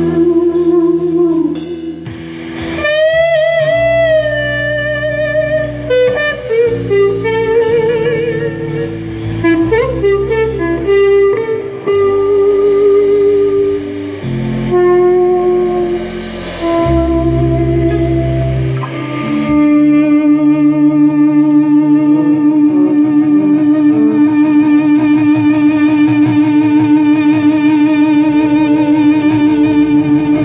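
Unaccompanied electric guitar, a Stratocaster-style guitar through a Marshall Astoria valve amp, playing a lead line of bent notes and vibrato. For about the last third it holds one long note that pulses steadily.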